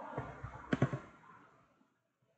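A few soft knocks, the loudest about three quarters of a second in, over a faint hiss that fades away in the second half.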